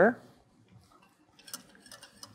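Wire whisk stirring melted chocolate in a glass bowl, making a few light clicks against the bowl that begin about a second and a half in. A spoken word ends just at the start.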